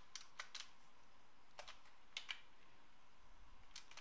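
Faint computer keyboard key clicks, a few scattered presses in small groups with pauses between, over quiet room tone.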